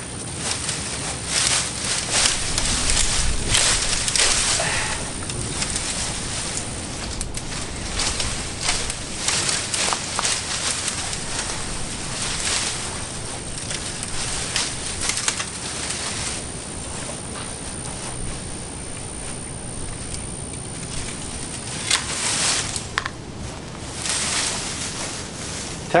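Leafy shrub branches rustling and scraping as they are worked through and cut with long-handled loppers, in irregular bursts.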